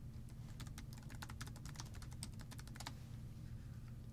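Computer keyboard typing: a quick, faint run of keystrokes that stops about three seconds in.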